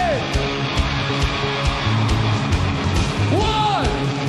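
Live rock band playing: a steady drum beat with bass and electric guitar. Near the end a shouted voice rises and then falls in pitch.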